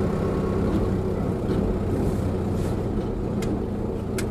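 Vehicle engine and road noise heard from inside the cab while driving, a steady low rumble with one faint click about three and a half seconds in.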